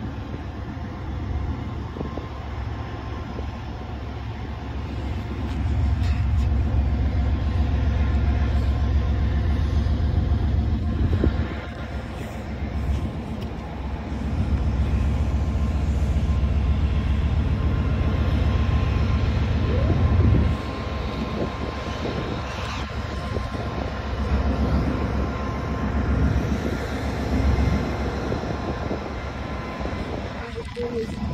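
Freight train of tank cars rolling past: a continuous low rumble of wheels on rails that swells louder for several seconds at a time, with a faint steady high tone running through it.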